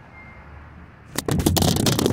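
Loud crackling and scraping of handling noise on a phone's microphone as the recording phone is fumbled and its lens covered, starting suddenly about a second in over a low steady hum.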